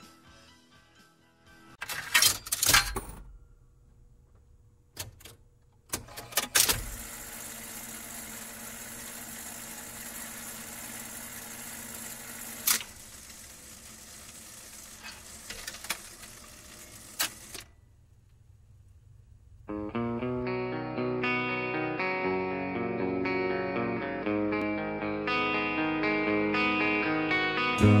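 Jukebox record-change effect: loud mechanical clunks and clicks, then a steady hiss with occasional clicks, like a stylus riding a record groove. After a brief lull, a clean guitar arpeggio starts the next song about two-thirds of the way through.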